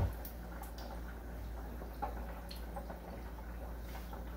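Breaded grit cakes frying in an electric deep fryer: hot oil bubbling steadily, with a few scattered small pops, over a steady low hum.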